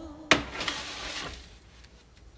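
Metal baking sheet set down on a glass-top electric stove: one sharp clatter about a third of a second in with a brief ring, then a smaller knock as it settles.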